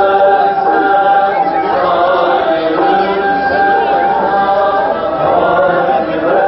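Voices singing a slow chant in long held notes that glide from pitch to pitch, loud and unbroken.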